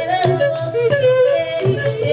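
A girl singing a traditional African song into a microphone, her voice stepping up and down in pitch in short phrases, over strokes of a wooden hand drum.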